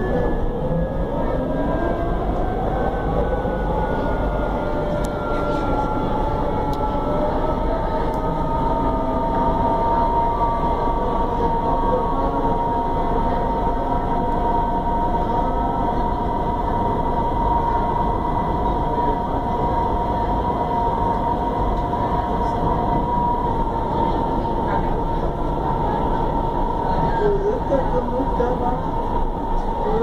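Inside a CSR-built electric multiple unit under way: the traction motor whine rises in pitch over the first few seconds as the train gathers speed, then holds a steady tone over the constant rumble of the wheels on the track. A second, higher whine slides slowly down in pitch at the same time.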